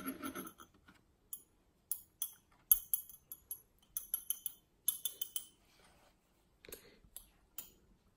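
Irregular light clicks and crackles from a cardboard collectible-wand box being handled and turned in the hands, coming in small clusters.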